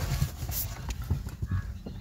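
Ride noise inside a moving Hyundai Creta: an uneven low rumble broken by many small knocks and clicks as the car goes over the road.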